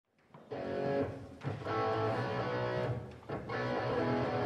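Guitar backing track for a vocal performance, playing strummed chords that start about half a second in.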